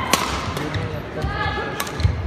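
Badminton rally: two sharp cracks of rackets striking the shuttlecock, about a second and a half apart, with short high squeaks of court shoes in between.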